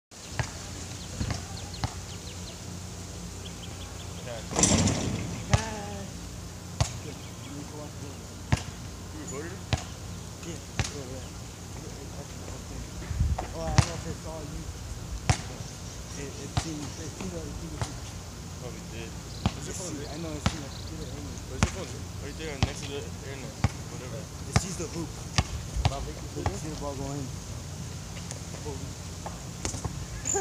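Basketball bouncing on an outdoor hard court: single sharp thuds every second or two, uneven in timing, with faint voices in the distance.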